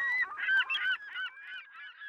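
A seagull calling: a quick string of short cries, loudest about half a second in and growing fainter toward the end.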